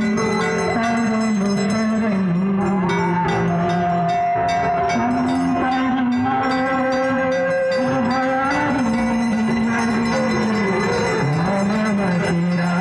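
Devotional Ganga aarti hymn sung in long held, slowly bending notes, with bells ringing steadily in an even rhythm throughout.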